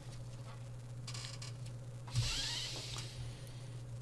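Pause in a studio voice recording: quiet room tone with a steady low hum, and a short rustling noise about halfway through.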